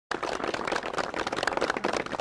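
Crowd applauding: dense, steady hand-clapping from a group of standing people, cutting in abruptly at the start.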